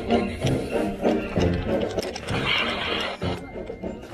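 A high school marching band's brass and percussion playing a lively, rhythmic parade tune, with a brief rush of noise about two seconds in.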